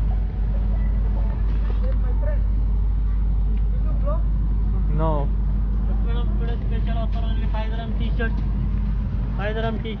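Open-air market ambience: a steady low rumble under scattered voices of people talking nearby, with louder talking near the end.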